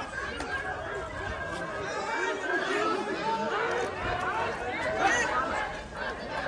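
A crowd's voices talking over one another, an unbroken babble of overlapping speech with no single clear speaker.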